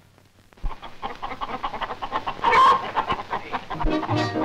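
Hens clucking in a busy, choppy chorus that starts after a brief silence, with one louder call about two and a half seconds in.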